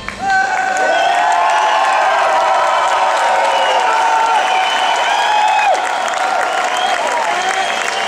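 Concert audience applauding and cheering, with long rising and falling shouts over the clapping, just as the band's music stops.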